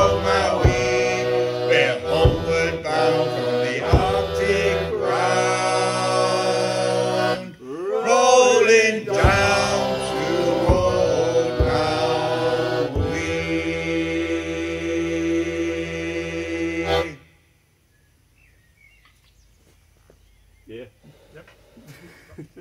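Male voices singing the last chorus of a sea shanty together, with single bodhrán strokes and a squeezebox, ending on a long held chord that stops sharply about 17 seconds in. A near-silent pause follows, with faint voices near the end.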